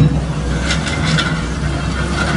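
Caterpillar wheel loader's diesel engine running steadily under load as its bucket shoves timber and metal wreckage across the road, with a few clanks and scrapes of debris about a second in.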